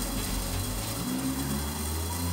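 Food frying in a lidded pan on a gas stove: a steady crackle over a low rumble.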